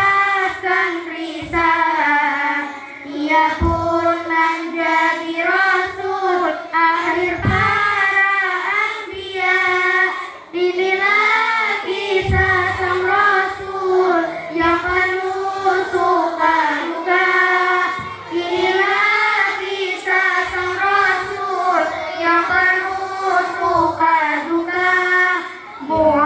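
A girl singing solo into a microphone, a long, ornamented melody that winds up and down in pitch, with short breaks for breath.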